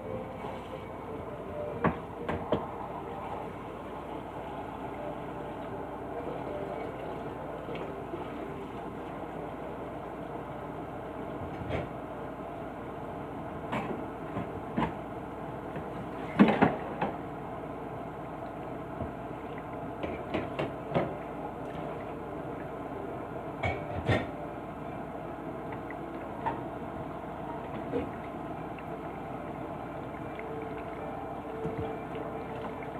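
Kitchen faucet running into the sink while dishes and pans are washed by hand, with scattered clatters and knocks of crockery and cookware, the loudest about halfway through.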